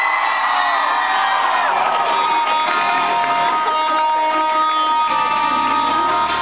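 Live rock band opening a song: an electric guitar holds ringing notes while the crowd cheers and whoops for the first couple of seconds. Bass comes in about five seconds in.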